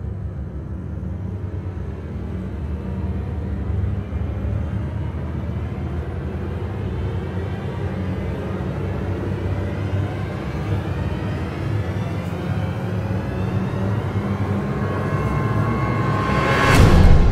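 Ominous soundtrack drone: a deep, steady rumble with faint tones slowly rising in pitch, building gradually in loudness as a suspense riser.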